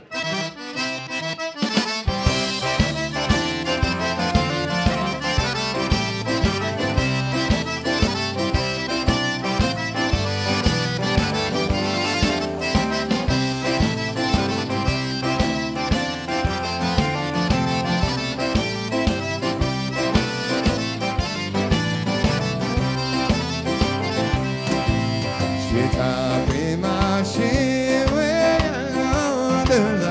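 Live Cajun band music led by a diatonic button accordion. Drums, bass and electric guitar come in under it about two seconds in with a steady dance beat.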